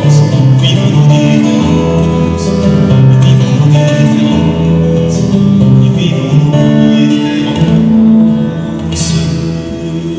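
Acoustic guitar playing a melody of held notes, growing quieter near the end as the piece closes.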